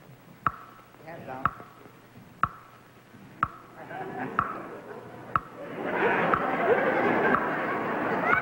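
Stage countdown clock ticking once a second, each tick a sharp click with a brief ringing tone. About six seconds in, studio audience noise swells up and carries on.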